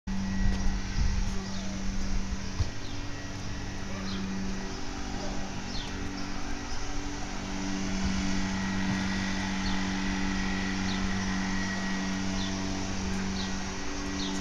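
A steady low mechanical hum, like a running motor, over a rough low rumble, with a few short faint high chirps scattered through.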